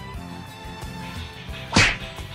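Background music playing, with a short, loud swish sound effect near the end that lasts about a fifth of a second.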